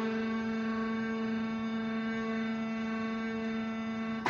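Casio electronic keyboard holding a single sustained note, dead steady with no wavering, fading only slightly.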